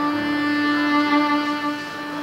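Solo viola played with the bow: a long held note with a slow melody moving above it, easing off in loudness near the end.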